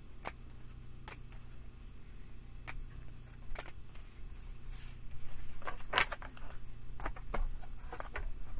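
Tarot cards being gathered up off a tabletop and shuffled: scattered light taps and slides of card on card and card on wood, coming faster and louder in the second half.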